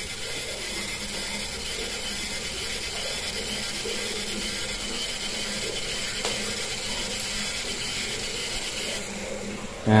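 Toy RC helicopter's coaxial rotors and small electric motor drive whirring steadily while it sits landed, its battery almost exhausted. The whir drops away near the end as the flat battery lets the motors stop.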